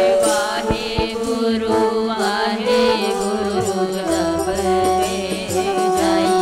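Sikh kirtan: voices singing a devotional hymn over the held chords of a harmonium, with a couple of sharp hand-drum strokes about a second in.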